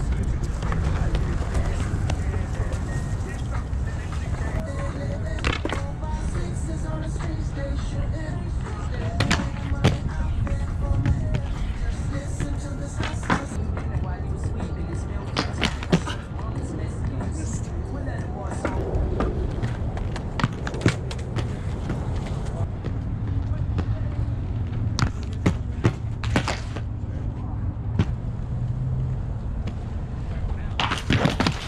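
Roces Majestic 12 aggressive inline skate wheels rolling over concrete with a steady rumble, broken by scattered sharp knocks and clacks of the skates landing and striking ledges and boxes.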